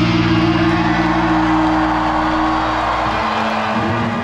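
Rock band's closing chord held and ringing out live on stage, with a crowd cheering and whooping over it; the lowest notes drop away about three seconds in.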